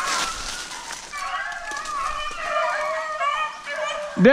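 A pack of beagles baying on a rabbit's trail, several overlapping wavering voices, with footsteps crunching through dry leaves and brush at the start.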